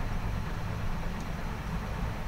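Steady low background rumble with a faint hiss, with no distinct events.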